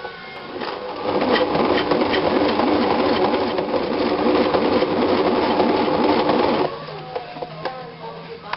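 Electric sewing machine stitching a seam: it starts up about a second in, runs at a steady even rate, and stops abruptly near the end.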